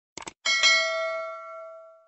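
A short mouse-click sound effect, then a notification-bell ding about half a second in that rings and fades away over about a second and a half.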